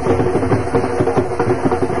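Drums beating a fast, even rhythm.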